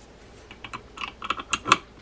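A quick run of light clicks and taps as the greased main gear is fitted into the body of a Daiwa 7850RL spinning reel, the loudest click near the end as it seats.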